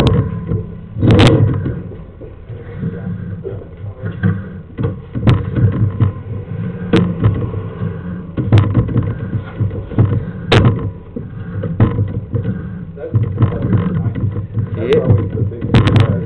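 Sewer inspection camera being pulled back through the pipe: a low rumble of the push cable moving, with sharp knocks every few seconds as the camera head bumps along the line.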